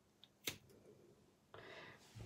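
A single sharp snip of scissors cutting through a candle wick, about half a second in. Otherwise near silence, with a faint soft rustle near the end.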